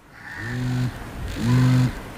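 A man's voice giving two short, level hesitation hums ('mm… mm'), each about half a second long, with a pause between them.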